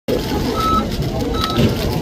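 Supermarket checkout barcode scanner beeping twice as items are rung up, two short high beeps under a second apart, over steady store background noise.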